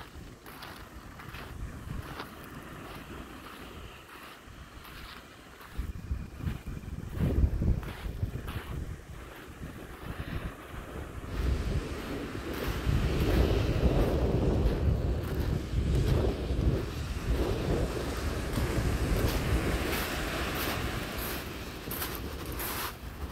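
Wind buffeting the microphone in gusts, stronger in the second half, over the steady wash of small waves breaking on a shingle beach. Footsteps crunch on the pebbles near the end.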